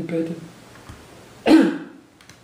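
A man's speech trails off, then about a second and a half in he clears his throat once, a short, loud cough-like burst.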